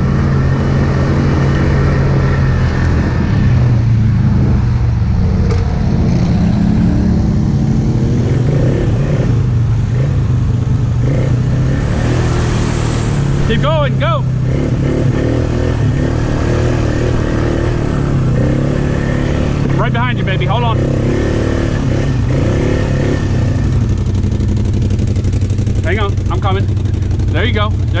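ATV engine running at low trail speed, its note rising and falling over the first several seconds and then holding steady. Short shouts carry over it about 14 and 20 seconds in, and a voice calls out near the end.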